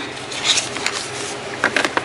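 Eyeshadow palettes being handled in a drawer: soft rustling with a few light clicks and taps as a boxed palette is set down and her hand reaches in for another.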